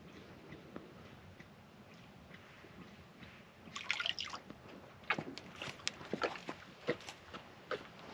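Water dripping and splashing from a horse's muzzle back into a plastic stock tank as it lifts its head from drinking. A quick run of drops starts about four seconds in, after a few quiet seconds.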